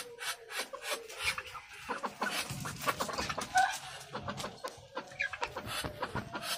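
Penned chickens and turkeys clucking, with a rapid run of rasping, scuffling noises and a couple of short higher calls about midway.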